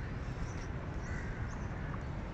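Birds calling in short bursts, the clearest call about a second in, over a steady low rumble.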